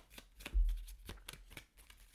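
A deck of tarot cards being shuffled by hand: a quick, uneven run of light card clicks, with one louder low thump about half a second in.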